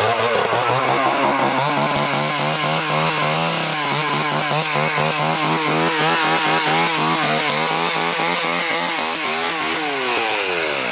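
Chainsaw running flat out, its pitch wavering up and down in a fast, regular pattern, then beginning to wind down in a falling whine near the end.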